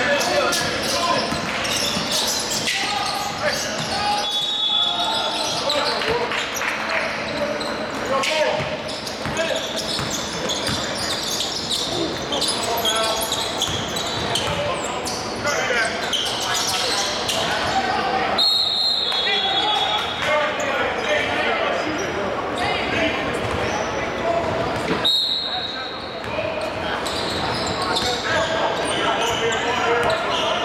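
A basketball dribbled and bouncing on a hardwood gym floor during live play, with indistinct players' voices echoing in the large hall.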